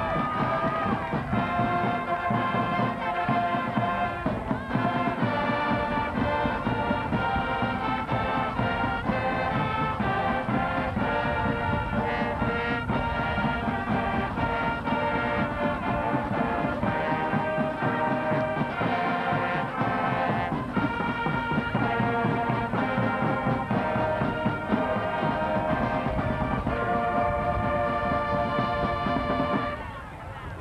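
High school marching band playing a brass-led piece, with the music stopping right near the end.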